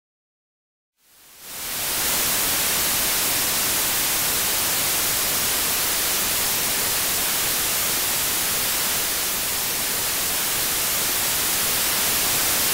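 Television static: the steady, even hiss of a detuned CRT set, fading in after about a second of silence and holding level.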